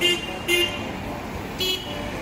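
A vehicle horn tooting three short times: twice close together at the start, then once more about a second and a half in, over steady road traffic.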